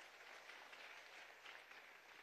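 Faint applause from a crowd of seated legislators in a large chamber.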